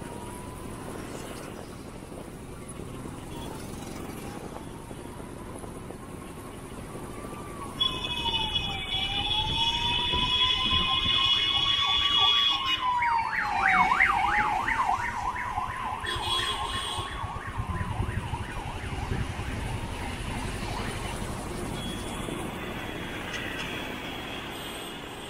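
Emergency vehicle siren, its pitch slowly rising and falling in a wail, switching to a fast yelp for a few seconds past the middle, then back to the wail. A loud steady blare comes in about a third of the way through and lasts about five seconds. Low traffic rumble runs underneath.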